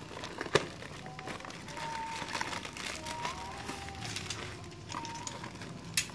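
Plastic packaging on a parcel, a black plastic bag under clear stretch wrap, crinkling as it is handled and turned over, with a sharp knock about half a second in.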